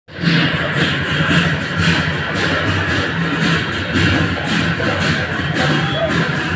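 Loud drumming in a steady, fast, even beat.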